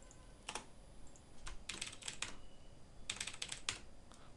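Computer keyboard keys being typed at a moderate level: a single keystroke, then a few short runs of quick keystrokes as a word is entered into a text field.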